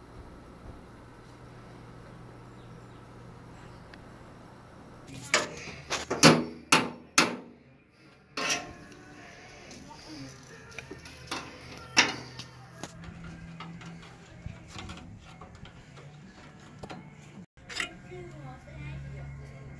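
Low room tone, then a cluster of loud, sharp metallic knocks and clanks about five to seven seconds in, with a few more near 8.5 and 12 seconds, from hands and tools working on an old riding lawn mower.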